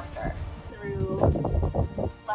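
A group of women laughing in quick bursts after the last word, over background music.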